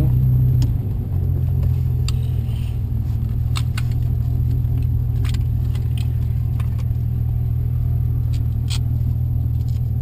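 Audi B5 S4's twin-turbo V6 and drivetrain droning low and steady from inside the cabin as the car rolls slowly at low revs, with a few scattered light clicks.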